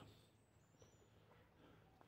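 Near silence: quiet woodland ambience, with a faint, thin, high bird chirp in the first second.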